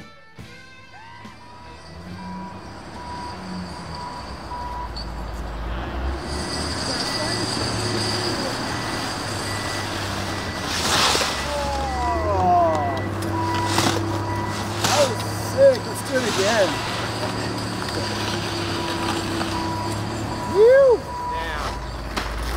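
Heavy vehicle engine running with a repeating high reversing-alarm beep over it. Short shouts or calls and a couple of louder knocks come and go.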